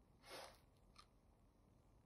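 Near silence: room tone, with one faint brief rustle near the start and a tiny click about halfway through.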